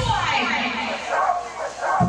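Electronic dance track in a breakdown: the bass and beat drop out, leaving a falling sweep and short, high, yelping vocal sounds.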